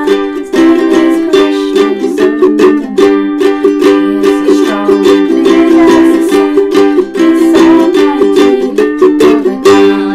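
Ukulele strummed in a steady rhythm, its chords changing every second or two.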